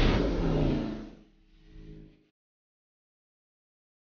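Koenigsegg Regera hypercar passing at very high speed, its roar fading quickly within about a second. A brief fainter sound follows, then the sound cuts off abruptly.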